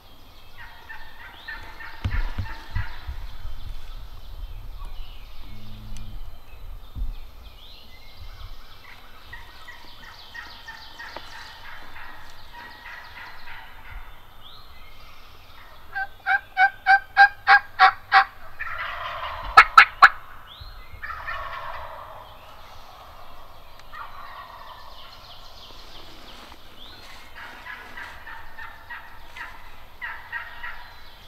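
Wild turkey gobblers gobbling again and again, several birds answering one another at varying distances. About two-thirds of the way through comes a run of about eight loud, evenly spaced calls, followed at once by the loudest gobble.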